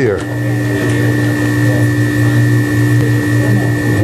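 Emery Thompson 12NW 12-quart batch freezer running while a batch of ice cream freezes: a steady low hum with a thin high whine over it.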